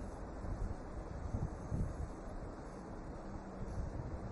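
Low, steady background rumble and hiss from an open microphone on a remote video link, with no speech. A faint hum comes in near the end.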